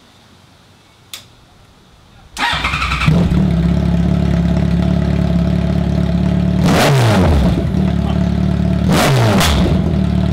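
2014 Yamaha FJR1300's inline-four engine run with no exhaust pipes fitted, open at the headers: it cranks briefly and starts about two and a half seconds in, then idles really loud. It is revved twice near the end, the revs falling back each time.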